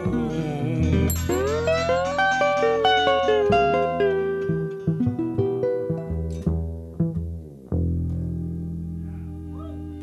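Live blues band playing an instrumental passage: electric lead guitar and resonator guitar over upright double bass, with guitar notes gliding up in pitch. About three quarters through, a chord is struck and left ringing as it fades.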